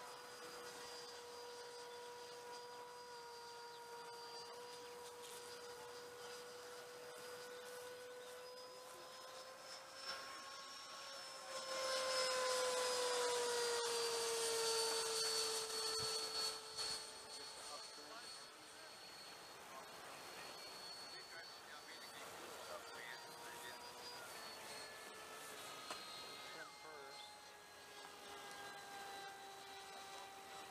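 A Hobby King Sky Sword electric ducted-fan RC jet whines steadily in flight. About twelve seconds in it passes close and gets much louder with a rushing sound for some five seconds, its pitch dropping as it goes by. It then settles back to a fainter, lower whine.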